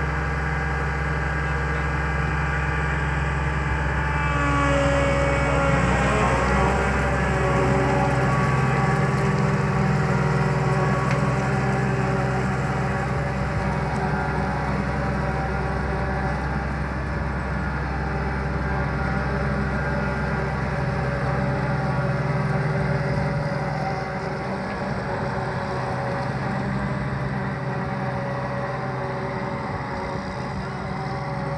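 John Deere combine harvester's diesel engine running as the machine drives slowly away. The engine note shifts up and grows a little louder about five seconds in, holds steady, and fades slightly over the last few seconds as it pulls away.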